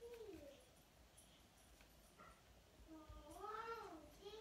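Faint, drawn-out animal calls whose pitch rises and then falls: one at the very start and another about three seconds in.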